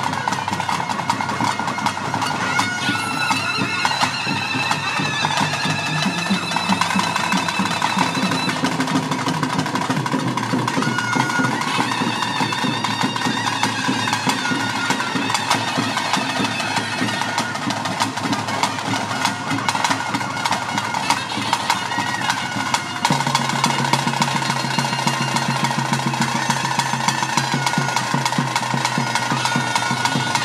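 Traditional kola ritual music: a shrill reed pipe playing a bending melody over a steady drone, with fast, dense drumming. About 23 seconds in, the drone shifts and the music grows a little louder.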